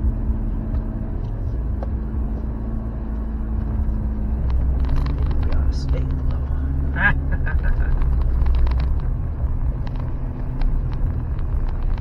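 Steady low rumble of a vehicle's engine and tyres heard from inside the cab as it drives along a sandy dirt track, with small clicks in the second half.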